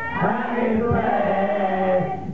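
Group singing: men and women singing together in a chant-like line of long held notes, starting after a brief pause.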